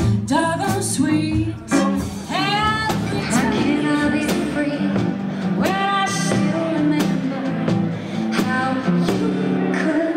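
Small jazz band playing live: drum kit with regular cymbal strokes, upright bass, and a lead melody line with sliding, bending notes.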